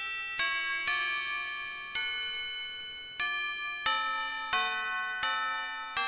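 A slow melody of single bell-like chime notes, each struck sharply and ringing on as it fades, roughly one note a second.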